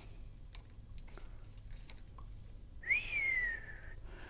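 A single short whistled note near the end, rising briefly and then gliding slowly down over about a second, with faint handling clicks before it.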